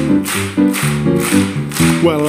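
Live band playing a keyboard-led country hoedown vamp, chords repeating over a steady beat of about two strokes a second.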